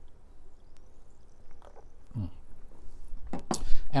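Quiet sipping and swallowing of water from a drinking glass, then the glass set down on the countertop with a few short, sharp knocks near the end.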